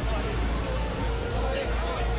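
Outdoor crowd commotion: scattered voices over a strong low rumble of wind and handling on a moving camera's microphone. A steady held tone starts about half a second in.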